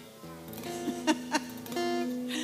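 Guitar played softly: notes ring from about a quarter second in, with a few sharp string strokes and another chord near the end.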